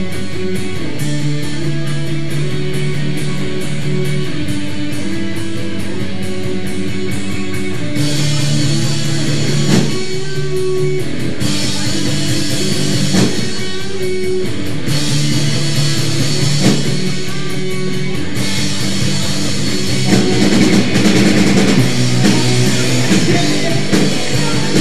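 Live rock band of two electric guitars, bass guitar and drum kit playing a loud instrumental passage with no vocals. Cymbals join the sustained guitar chords about eight seconds in, filling out the sound.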